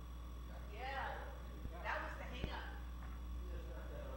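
Faint, indistinct voices of people talking at a distance from the microphone, with two small knocks a little past the middle, over a steady low hum.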